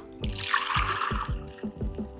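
A shaken cocktail poured in a stream from a shaker into a rocks glass, a splashing pour lasting about a second, over background music with a steady beat.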